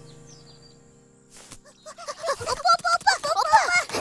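A music sting fades out under a few high bird chirps. After a short near-quiet moment and a quick swish, a high-pitched cartoon voice starts calling in rapid repeated cries.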